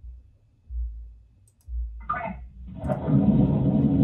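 A phone call connecting: two dull low thumps, a brief snatch of voice, then from about three seconds the line's steady muffled background noise, cut off sharply above the narrow band of a phone line.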